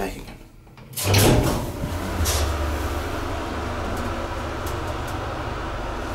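1972 VALMET-Schlieren single-speed traction elevator starting off after a floor button is pressed. About a second in there is a sudden clunk as the machine starts, then a steady low hum while the car travels.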